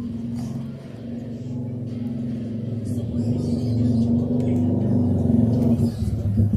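A low, steady engine-like hum that grows gradually louder.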